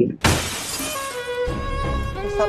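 An edited-in glass-shattering sound effect that starts suddenly, running straight into slow, sad music with held string notes.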